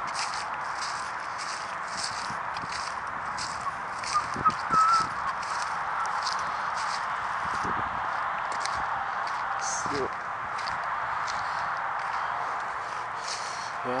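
Footsteps swishing and crunching through dry grass and dead leaves, about two steps a second, over a steady rushing background noise. A brief high chirp sounds about four and a half seconds in.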